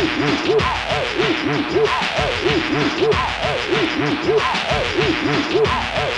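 Hardcore techno DJ mix: a synth riff of quick notes that swoop up in pitch and back down, looping over a steady, driving kick drum.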